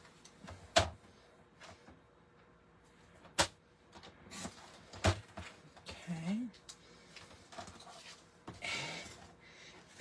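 Paper trimmer in use on cardstock: a few sharp plastic clicks as the paper and blade carriage are set, and near the end a short scraping hiss as the blade is drawn through the card.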